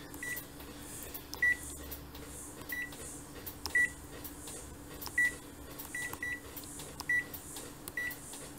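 Konica Minolta bizhub C353 copier's touch-screen panel beeping once for each key tap while a user name and password are typed in: about nine short, high beeps at an uneven pace, over a steady low hum.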